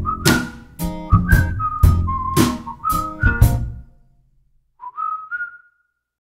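A song's outro: a whistled melody over the band's beat, which stops about four seconds in. One short whistled phrase then follows alone, and the track ends.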